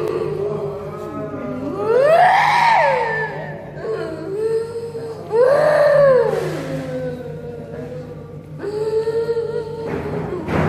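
A woman wailing and moaning in long cries that swoop up in pitch and fall back, the two loudest about two and five and a half seconds in, with lower held moans between: a person being treated as possessed during a bomoh's ritual.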